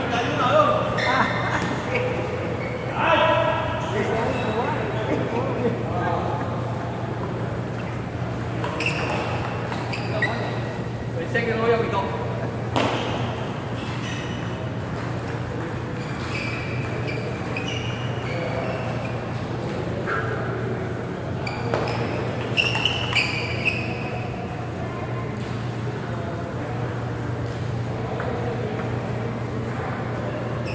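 Table tennis balls clicking off paddles and tables at several moments in a large hall, with people's voices in the background and a steady low hum.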